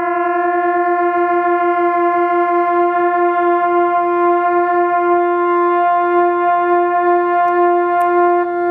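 Two B-flat trumpets holding the same note slightly out of tune, producing beats: the combined tone wavers in loudness, quickly at first (several pulses a second) and slowing to about one or two a second as one player pushes in his tuning slide and brings his flat pitch toward the other's.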